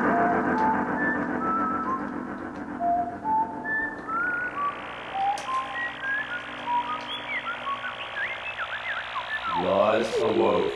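Synthesizer space effects: short whistle-like electronic bleeps hopping from pitch to pitch over a fading held chord. From about four seconds a hiss joins, with quick rising chirps. A voice starts just before the end.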